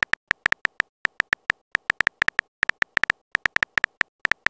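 Keyboard typing sound effect of a texting-story chat animation: a quick, uneven run of short high-pitched ticks, one per keypress, as a message is typed out.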